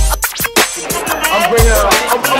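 Hip hop music: a deep bass kick drum hits on the beat, with warbling scratched-record sounds over it.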